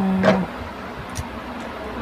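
A woman's voice trails off in one drawn-out syllable, then only low, steady background noise with a faint click about a second in.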